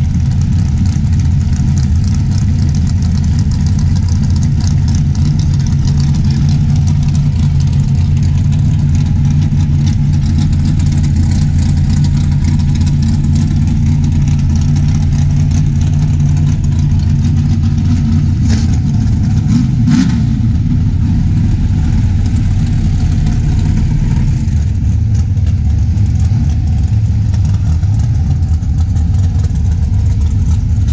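A Pro Mod Mustang drag car's engine idling loud and steady with a low rumble. About twenty seconds in there are two sharp clicks and a brief small rise in revs.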